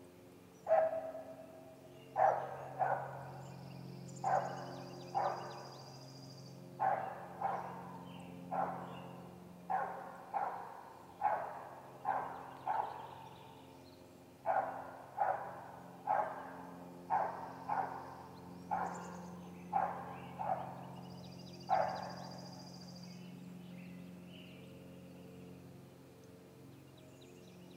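An animal barking repeatedly, about twenty-five sharp barks at one or two a second, with a short pause in the middle, stopping a few seconds before the end. Faint high bird chirps and a steady low hum sound underneath.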